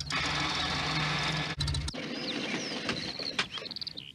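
A van's engine running with its wheel spinning in soil, the sound of the van stuck, cutting off suddenly about two seconds in. Then birds chirping.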